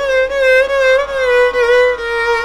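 Carnatic violin, bowed, sliding up into one long held note in raga Bhairavi. The note wavers slightly and dips a little in pitch near the end.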